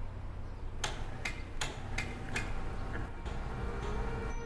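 Rhythmic ticking that starts about a second in, roughly two and a half sharp ticks a second, over a low steady hum.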